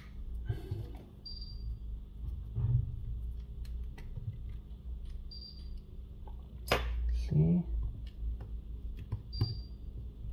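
Small clicks and scrapes of metal prying tools and tweezers working at a Samsung Galaxy S23 Ultra's glass back cover as its adhesive is cut and the panel lifted, with a sharper click about seven seconds in. A low steady hum runs underneath.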